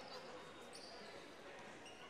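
Faint sounds of a basketball game in play in a gymnasium: a ball bouncing on the hardwood court and a couple of brief high sneaker squeaks over a low hall ambience.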